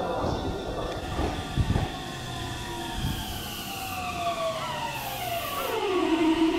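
Meitetsu 2200-series electric train braking as it pulls in: its VVVF inverter whine falls steadily in pitch as the train slows, with a few low thuds from the wheels.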